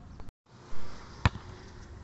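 A basketball bouncing once on asphalt, a single sharp thud a little past the middle, preceded by a brief rush of noise.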